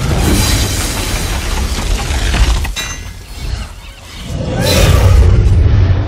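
Film battle sound effects of a giant robot fighting a monster: heavy crashing and shattering debris over a deep rumble, with orchestral score underneath. A sharp impact comes about three seconds in, then a brief lull, then a loud swell of crashing near the end.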